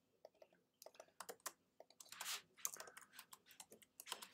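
Faint computer keyboard typing: a run of irregular, quick key clicks.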